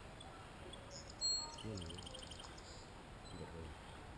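Faint bird calls: a short high whistle about a second in, followed by a quick run of evenly spaced high chirps.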